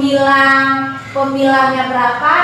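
Voices singing two long held notes of about a second each, with a short break between them about a second in.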